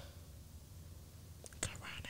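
Quiet room tone with a steady low hum, and a brief faint click about one and a half seconds in.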